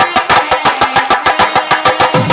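Temple percussion beating fast, even strokes, about eight a second, with a steady ringing tone held over the beat.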